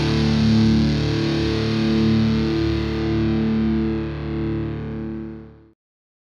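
A distorted electric guitar chord held and left ringing as the final note of a heavy metal song, fading quickly and then stopping shortly before the end.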